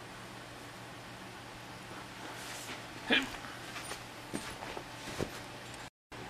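Quiet room tone with a faint steady hum, and a few light clicks and taps of handling in the second half.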